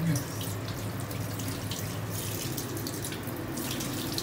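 Water running steadily from a tap in a small tiled washroom, over a low steady hum.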